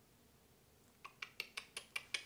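Quiet at first, then from about a second in a quick run of about six light, sharp clicks, roughly six a second.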